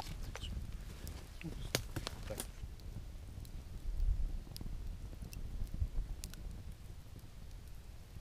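Wood campfire crackling: irregular sharp pops and snaps over a faint low rumble.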